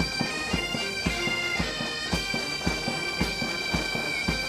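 Military pipe band playing a march: bagpipes with a steady drone over a regular drum beat of about two strikes a second.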